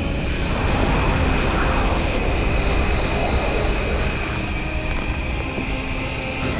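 Animated sound effects of an energy beam blasting a rock apart: one continuous loud rumbling blast with a noisy wash over it, under a held high tone.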